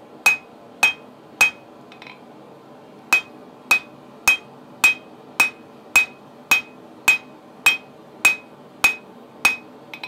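Hand-hammer blows on red-hot steel on a small steel anvil, a steady rhythm of just under two blows a second. Each blow carries a short high ring from the anvil. About two seconds in there is a brief pause with a light clink, then the blows resume.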